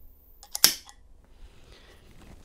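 Electric solenoid lock actuator throwing its latch with one sharp metallic click about half a second in, just after a smaller tick. It fires because an iButton reader has accepted the programmed key.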